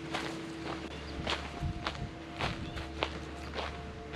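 Footsteps of a person walking at an even pace, about seven steps spaced a little over half a second apart, with a faint steady hum underneath.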